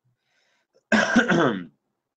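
A man clearing his throat once, about a second in; it lasts under a second.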